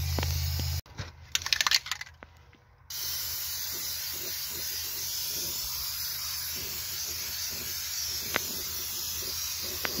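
Aerosol can of Fluid Film undercoating spraying in a steady hiss onto a truck's frame rail. About a second in, the spray breaks off for roughly two seconds, with a few sharp clicks and then near silence. After that the steady spraying hiss resumes.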